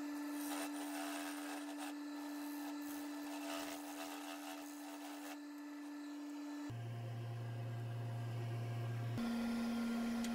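Wood lathe running with a steady hum while a bowl gouge cuts a recess and foot into the base of a dry maple bowl blank. About two-thirds of the way in the hum drops to a lower pitch.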